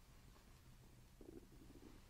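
Near silence: faint room tone with a low steady hum, and a brief faint low rumble a little after a second in.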